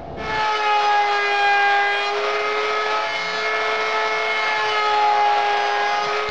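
Table-mounted wood router spinning up and holding a steady high whine as a quarter-inch round-over bit cuts along the edges of a cherry block.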